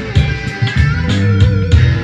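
Made-in-Japan Squier Stratocaster electric guitar playing a funk-rock part with low, punchy notes and a pitch bend about halfway through, over a steady beat of sharp hits.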